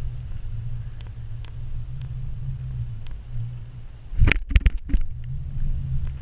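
Mountain bike rolling downhill on tarmac, heard from a camera mounted on the bike: a steady low rumble of tyres and wind on the microphone. A bit past four seconds in, a short burst of hard knocks and rattles as the bike jolts over a bump.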